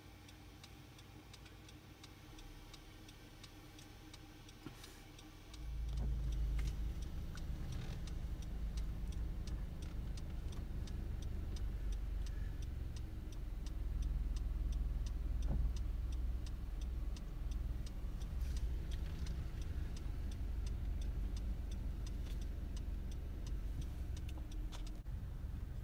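A car engine running, heard as a steady low rumble that starts suddenly about five seconds in, with a fast, even ticking over it, about four ticks a second.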